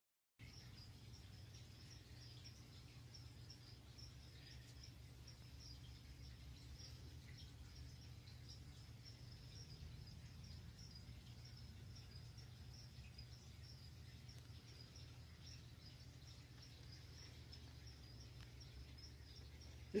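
Faint cricket chirping, a steady high chirp repeated about two to three times a second, over a low steady hum of room noise.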